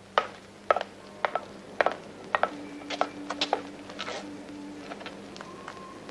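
A string of about a dozen sharp, irregular clicks and knocks, with a steady low tone held for about two seconds in the middle.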